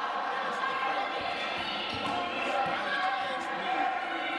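Basketball bouncing on a hardwood gym floor during live play, a few bounces, over the steady voices of players and spectators in the gym.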